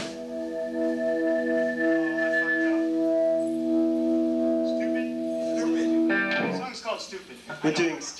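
Amplified electric guitars holding one chord that rings on steadily after the band stops, cut off suddenly about six seconds in. Talking follows near the end.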